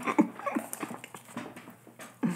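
A man chuckling quietly, short breathy bursts of laughter that trail off.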